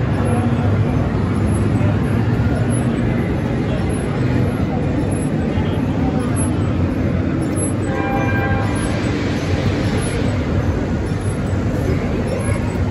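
Busy exhibition-hall ambience: a steady din of crowd chatter over a low machinery hum, with a brief pitched sound about eight seconds in and a stretch of brighter hiss just after.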